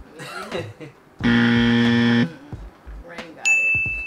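Game-show style sound effects: a loud, flat buzzer lasting about a second, starting just over a second in, then a bright ding that rings on near the end.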